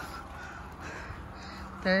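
Low, steady rumble of wind and handling noise on a walking hiker's camera microphone, with a few faint short calls from a bird; a woman's voice begins near the end.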